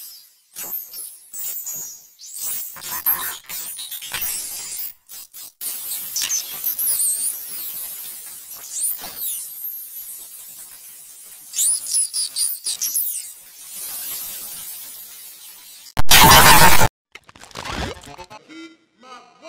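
A man's speech and laughter run through a video-editor pitch effect that pushes them extremely high, so they come out as thin squeaks and chirps with no words that can be made out. About sixteen seconds in there is a very loud burst of harsh noise lasting about a second.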